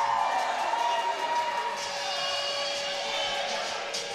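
Rink crowd cheering after a goal, steady and moderate, with a faint held tone running underneath.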